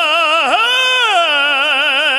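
A man singing held notes in an imitation of classical operatic voice, with a strong, even vibrato. There is a brief break about half a second in. He then holds a note that slides down to a lower pitch and keeps its vibrato, showing the heavy-breath-support style of classical singing.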